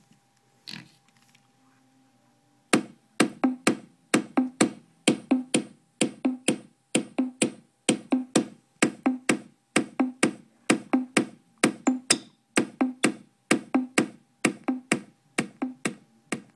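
SimplyVibe SG-S350P portable speaker playing a drum-machine beat: sharp percussive hits, two to three a second, each with a low thud, starting about three seconds in after a few light handling clicks.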